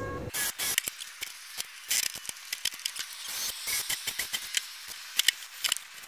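A cordless drill driving screws into a wooden support block and hinge, heard as rapid, thin, high-pitched clicks and rattles with no low end, as if the footage were sped up.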